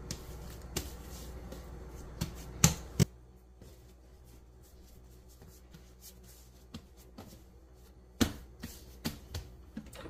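Hands slapping and pressing soft yeast bread dough flat on a floured countertop to knock the air out of it: a few scattered slaps and taps, the loudest a little under three seconds in and again about eight seconds in.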